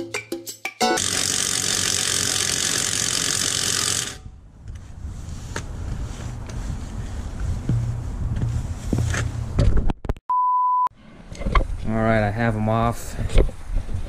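Cordless impact wrench running on a wheel's lug nut for about three seconds, a loud steady buzz. Before it comes a moment of plucked-string music; later there is a short pure-tone bleep, and a man talks near the end.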